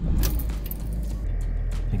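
Low steady rumble heard inside a small car's cabin, typical of the engine idling; about a second in the low hum settles into a more even beat and a faint whine joins it.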